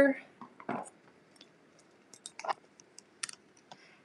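Scattered light clicks and taps from handling a clear plastic ornament and its small metal cap.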